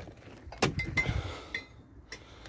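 Rear door of a Land Rover Series 3 being unlatched and swung open: a few sharp metallic clunks and clinks from the latch and door, with a brief ringing note.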